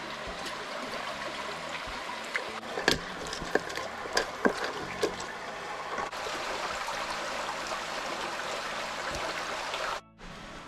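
Water trickling and splashing steadily as fish pieces are rinsed in a basin of water, with several sharp knocks about three to five seconds in.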